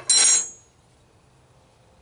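A metal spoon clinks and clatters once against a hard surface, with a short high metallic ring, in the first half second.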